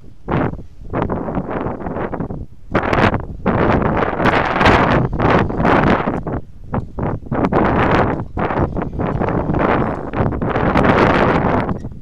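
Wind buffeting the camera microphone in loud, uneven gusts that swell and drop every second or so, strongest around the middle and again near the end.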